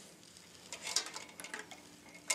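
Light clicks and rattles of a camera power cable and its plug being handled against the metal body of a surgical microscope, a quick cluster of ticks about a second in.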